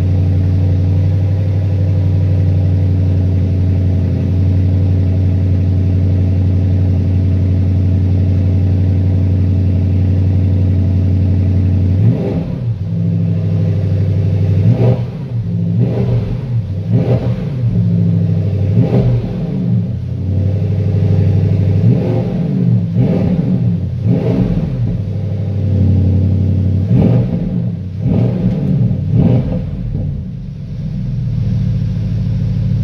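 Porsche Panamera GTS twin-turbo 4.0-litre V8, with its sport exhaust, idling steadily, then, from about twelve seconds in, revved in a series of a dozen or so quick throttle blips, each a short rise and fall in pitch.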